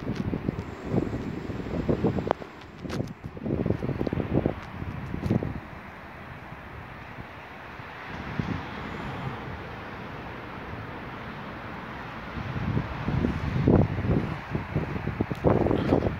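Wind buffeting the microphone in uneven gusts of low rumble, over a steady city-street background of traffic. The gusts ease off through the middle and pick up again near the end.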